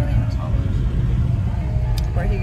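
Steady low rumble of a car's cabin on the move, with a woman's voice talking over it.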